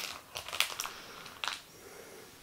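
Foil wrapper of a Bandai Carddass booster pack crinkling as it is handled, in a few short crackles.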